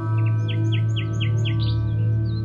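A bird gives a quick run of short, falling chirps, about five a second, lasting a little over a second. Under it runs soft background music with a steady low drone.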